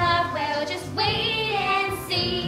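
A teenage girl singing a show tune live over musical accompaniment, with held notes that waver in pitch.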